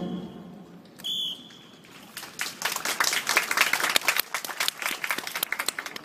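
A short, high whistle blast about a second in, then scattered hand-clapping of an audience from about two seconds in, after a marching band's piece has just ended.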